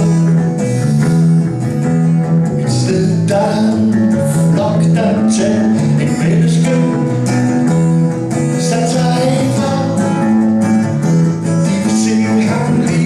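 Live acoustic guitar strumming together with an amplified electric guitar, with a man singing over them.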